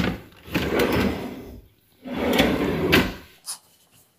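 Closet drawers sliding open and shut: two long slides of about a second each, then a light knock near the end.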